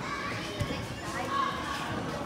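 Children's voices and chatter among the riders of a moving carousel, with some music in the background.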